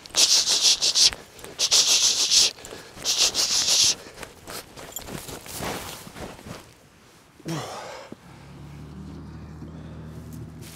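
Heavy breathing of a person running, three loud hissing breaths in the first four seconds, then softer sounds. From about eight seconds in a vehicle engine idles steadily, heard from inside a utility vehicle's cab.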